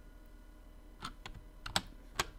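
Computer keyboard keystrokes while editing code: a quiet first second, then a few quick key presses, the loudest near the end.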